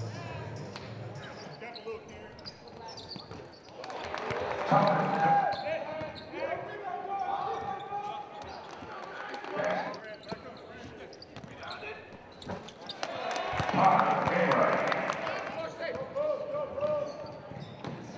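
Live basketball game sound: a basketball bouncing on a hardwood court amid scattered impacts, with indistinct shouting voices of players and spectators.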